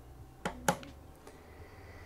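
Quiet room with a faint low hum, broken by two short clicks a quarter of a second apart about half a second in.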